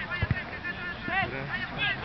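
Distant shouts and calls of players across an open soccer field, with two low thumps about a quarter second in.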